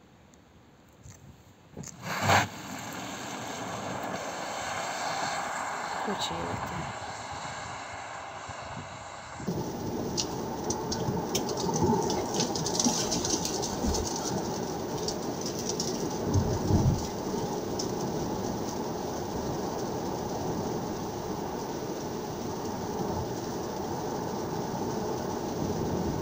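Tesla Model Y Performance driving on a wet road. A sharp, loud knock comes about two seconds in, followed by a hiss of tyres as the car pulls away. From about ten seconds on there is steady road and tyre noise heard inside the cabin.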